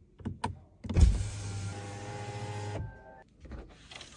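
Changan Qiyuan A05 power window motor driving the glass for about two seconds after a couple of switch clicks, a steady hum that starts sharply and stops. A few light clicks follow near the end.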